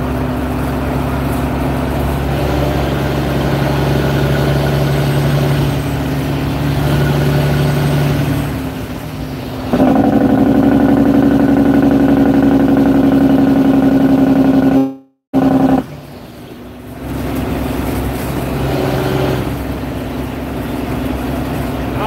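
Truck engine running steadily while driving, heard from inside the cab. From about ten seconds in it grows louder for several seconds, then the sound cuts out abruptly for a moment and comes back quieter.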